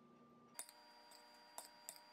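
Near silence, with a few faint clicks of a metal spoon against a glass bowl as crumbled tofu is stirred.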